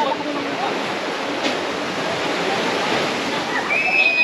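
Outdoor crowd ambience: a steady rushing noise with scattered voices of people talking. Near the end a high, held note starts and bends down as it stops.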